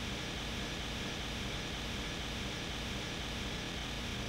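Steady background noise of workshop machinery in a machine hall: an even hiss over a low hum, with no change in pitch.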